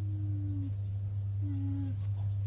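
A cat's low, even moaning sound of protest while being handled: one drawn-out tone, slightly falling, and a shorter one near the end, over a steady low hum.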